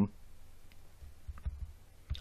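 Quiet room tone with a few faint short clicks and low bumps.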